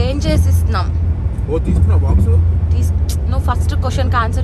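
Steady low rumble of a moving vehicle, with brief snatches of soft talk over it.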